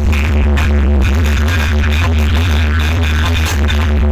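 Music blasting from a large DJ sound system, carried by a very deep, heavy bass that stays steady throughout.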